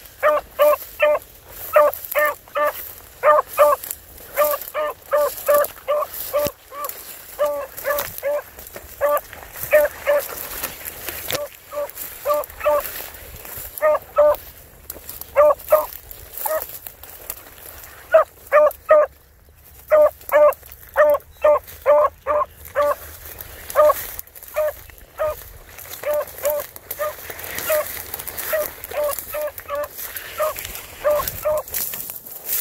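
Beagle barking on the move: short, rapid barks, three or four a second, in runs broken by brief pauses.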